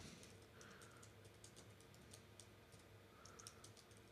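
Faint typing on a computer keyboard: a quick, irregular run of light key clicks.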